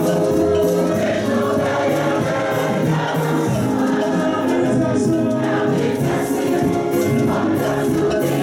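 A church congregation singing a gospel praise and worship song together in chorus, with light percussion keeping a steady beat.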